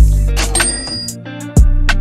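A cash-register 'ka-ching' sound effect, a bright bell ring about half a second in, laid over background music. The music has heavy bass-drum hits at the start and again near the end.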